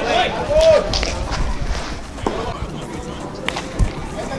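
Voices on a baseball field at the start, then a few sharp knocks: one a little after two seconds in and two close together near the end, with music underneath.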